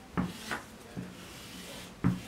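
Tailor's chalk rubbing across fabric laid on a wooden table as a pattern line is drawn, in a few short, soft strokes within the first second.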